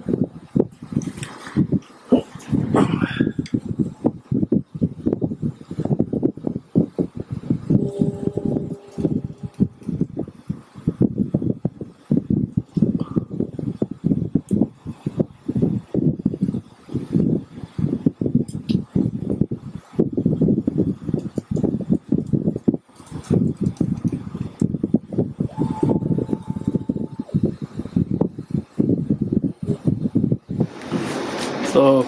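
Sovol SV01 Pro 3D printer's stepper motors driving the print head and bed in short, irregular moves as the test print starts, with brief whining tones from the motors about eight seconds in and again near the end.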